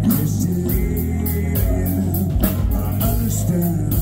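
Rock band playing live and loud: electric guitar, bass guitar and drum kit with cymbals, and a male lead vocal over them.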